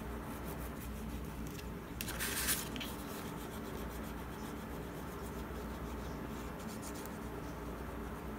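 A brief scratchy rub of hand and paper across the paper-covered cardboard about two seconds in, while glue is squeezed along the edge; a faint steady low hum lies underneath.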